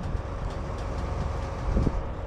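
Tandem disc harrow pulled through corn stubble: a steady low rumble of the rolling disc blades and frame, with a faint steady machine hum and a single knock near the end.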